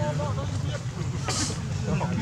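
People talking in the background over a steady low hum, with a short hiss about one and a half seconds in.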